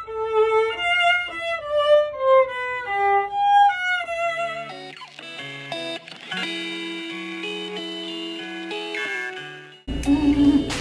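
A violin plays a short melody of single, stepped notes. About four and a half seconds in it gives way to a different piece of music, with held chords over a low bass line that fades near the end.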